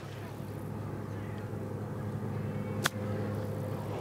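A golf ball struck once with a club: a single sharp click nearly three seconds in, over a steady low hum.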